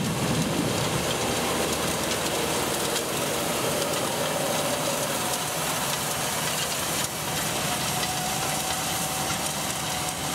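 John Deere 7530 tractor's diesel engine running under load while pulling a John Deere 750A seed drill through the soil, with a faint steady whine over the last few seconds.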